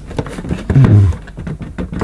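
Plastic dust-compartment lid of a Hoover Sensotronic cylinder vacuum cleaner being pushed down by hand, with small plastic clicks and creaks as it fails to latch, since it is being shut on a makeshift wedge with no dust bag fitted. A short vocal sound from the person pressing, the loudest thing, comes a little before the middle.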